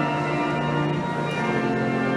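Church organ playing a hymn in sustained, held chords, the harmony shifting about a second and a half in.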